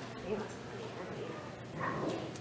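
Faint chatter of children's voices, with a short, higher-pitched voice near the end.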